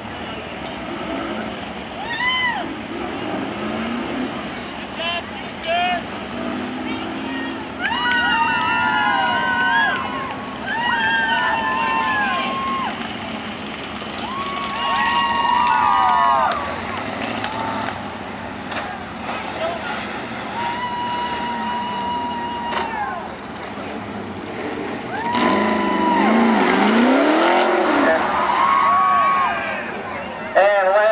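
Street stock race car's tyres squealing in repeated short bursts from about two seconds in, rising and falling in pitch, with its engine revving up and down; the revving is heaviest near the end.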